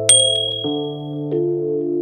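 A short, high ding of a button-tap sound effect near the start, ringing out over about a second, over background music of held keyboard chords that change twice.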